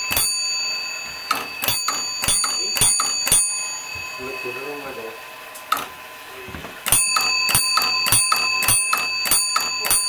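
Fire alarm telegraph bells and relays striking out a box number: a run of sharp, ringing strikes, about three a second. After a pause of a few seconds, a second run follows.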